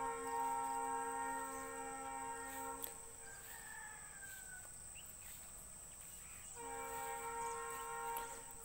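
A faint sustained horn-like tone made of several steady pitches sounds for about three seconds, stops, then comes back near the end. A thin steady high whine runs underneath.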